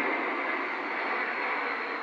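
Airplane passing overhead, heard as a steady, even rushing noise.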